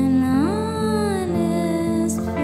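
A woman's voice singing a wordless held note, stepping up in pitch about half a second in and then slowly sinking, over acoustic guitar.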